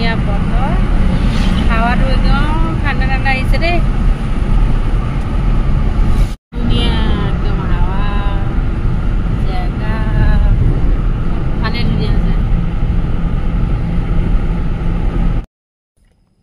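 Loud low rumble of road and wind noise inside a moving car's cabin, with a woman talking over it. The sound drops out for a moment about six seconds in and cuts off just before the end.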